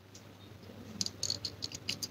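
Faint clicks and light rattling of a perfume bottle being handled, a quick run of small clicks starting about halfway through.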